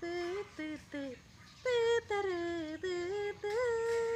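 A woman humming a wordless tune: short notes at first, then longer sliding notes, ending on one note held for over a second.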